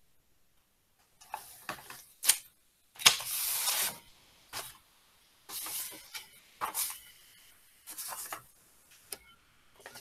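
Irregular bursts of paper rustling and cutting as a workbook page is cut out with scissors, heard over a video-call microphone. The longest and loudest burst comes about three seconds in and lasts about a second.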